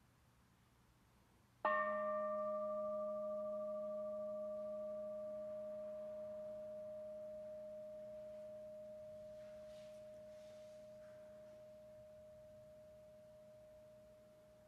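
A metal singing bowl struck once with a wooden striker a couple of seconds in, then ringing on with one clear tone and a lower hum, slowly fading. The brighter overtones die away within the first few seconds.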